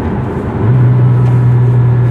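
Porsche Cayman S engine heard from inside the cabin, a steady low drone over road noise; the note dips briefly, then comes back louder and holds from well under a second in.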